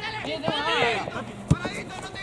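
Football players shouting to each other on the pitch, with one sharp knock about a second and a half in.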